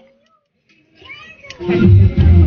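A short quiet gap, then a woman's voice starts up about a second and a half in, with background music underneath.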